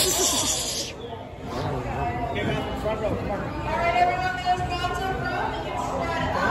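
Indistinct chatter of people's voices in a large hall, opening with a short hiss that lasts about a second.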